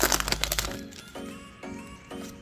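Foil Pokémon booster-pack wrapper crinkling and tearing as the pack is opened and the cards pulled out, stopping under a second in. Background music with a beat about twice a second plays throughout.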